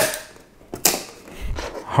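A freshly printed plastic part cracking loose from the M3D Micro 3D printer's print bed as a credit card is pried under it: a sharp crack, then a second one just under a second later. The speaker calls it a terrifying sound.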